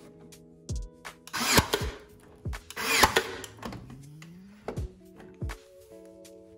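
Nail gun firing twice about a second and a half apart, driving fasteners into the wooden radio cabinet face, over background music with a steady beat.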